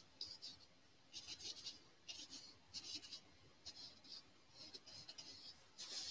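Paintbrush stroking oil paint onto a canvas: faint, short, scratchy strokes, roughly one a second.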